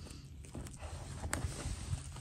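Fingers handling and rustling the sheer, glittery fabric of a doll's dress, with one sharp click a little past halfway.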